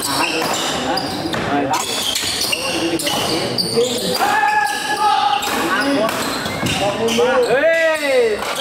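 Badminton doubles rally: repeated sharp racket strikes on the shuttlecock and players' footwork on the court, with shouting voices around it.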